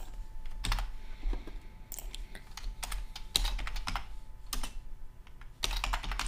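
Typing on a computer keyboard: short, irregular runs of keystrokes with brief pauses between them.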